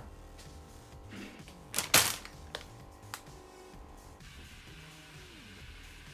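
Groceries being handled on a kitchen counter: a loud clatter about two seconds in, then a couple of lighter knocks, over background music.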